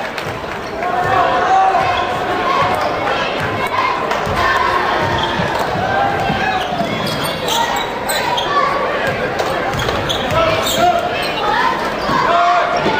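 Basketball dribbled on a hardwood gym floor during play, under indistinct shouts and voices from players and spectators.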